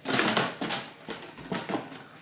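Food packaging being handled: a plastic bag and a cardboard box crinkling and rustling, with many small crackles. It is loudest at the start and fades.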